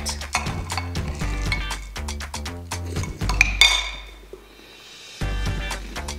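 Background music with a steady bass line and beat, thinning out and going quiet about four to five seconds in before it comes back. A few light clinks of a spoon against a ceramic cereal bowl.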